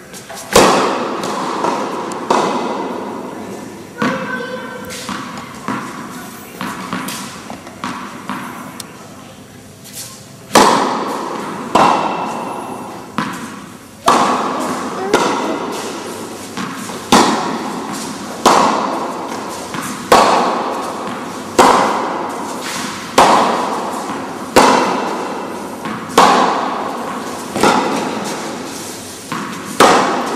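Tennis ball hit back and forth with rackets, each sharp hit followed by a ringing echo. The hits are uneven and softer at first, then come loud and regular, about one every one and a half seconds, as a steady rally.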